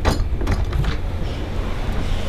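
An interior door being unlatched and opened, with a few faint clicks near the start, over a steady low rumble.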